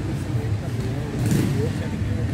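Steady low rumble of city traffic with faint voices of people in the background, and a brief hiss just past the middle.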